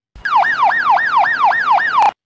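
Electronic ambulance siren on its hyper-yelp setting: a very fast up-and-down sweep, about three cycles a second. Each cycle snaps up in pitch and slides back down, six in all, then it cuts off suddenly.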